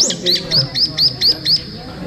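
Recorded brown-eared bulbul calls played through a display's speaker: a quick series of about seven short, sharp rising chirps, about four a second.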